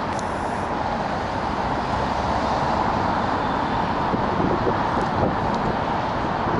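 Steady city road traffic noise, a continuous hum of passing cars.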